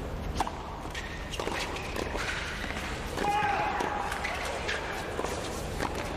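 A tennis serve struck about half a second in, then a doubles rally of racket hits on the ball and ball bounces on a hard court. Voices are heard partway through.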